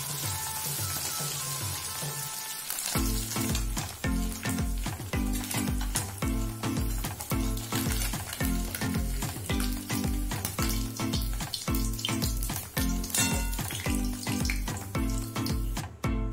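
Small fish frying in hot oil in a kadai, a steady sizzle with spattering. Background music runs under it, its beat coming in about three seconds in and louder than the frying from then on.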